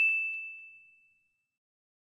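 Bright, bell-like ding sound effect on a single high pitch, ringing out and fading away within about a second, with a couple of faint ticks as it begins to decay.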